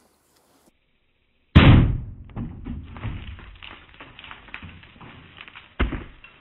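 A single .44 Magnum revolver shot, very loud and sudden, followed by a long echoing tail that dies away over a couple of seconds. A shorter sharp knock comes near the end.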